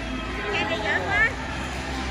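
High-pitched children's voices calling out amid the general hubbub of a busy indoor play area, over a steady low rumble.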